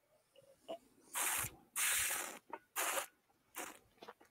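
A sip of whisky being drawn and aerated in the mouth: four short hissing slurps of air sucked through the liquid. The longest and loudest comes about two seconds in.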